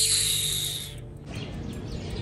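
Soft background music, with a sudden rush of hiss at the start that fades away over about a second.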